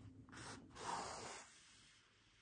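White sashiko thread being pulled through folded fabric by hand: two faint swishes, the second longer and louder.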